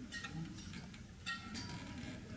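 A few faint, sharp clicks and clinks, about four in two seconds, from the laser-and-water demonstration apparatus being handled as it is filled with water.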